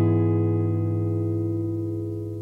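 Background music: a single strummed guitar chord held and ringing out, slowly fading.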